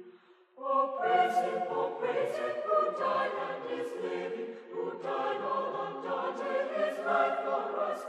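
A Salvation Army songster brigade singing a hymn in harmony. The held chord fades into a brief silence about half a second in, then the choir comes back in and sings on.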